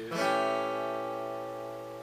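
Acoustic guitar strummed once on an A7 chord (an A shape with G on the top E string), the chord ringing on and slowly fading.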